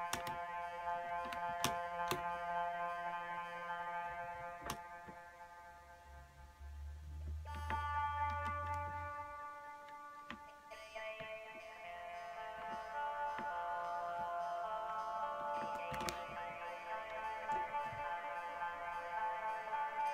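Eurorack synthesizer voice (a Mutable Instruments Plaits oscillator sequenced by an OP-Z), run through an Ibanez AD-202 analog delay, playing sustained notes. The notes change pitch about a third of the way in and again about halfway, with a low bass note in between and a few sharp clicks.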